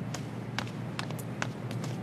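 Footsteps on hard ground: a quick, uneven series of sharp clicks, over a steady low hum.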